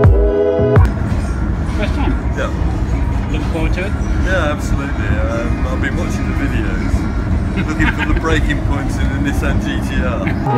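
Steady rumble and rattle inside a car-carrying rail shuttle carriage, with a man's voice under it. Electronic music ends about a second in.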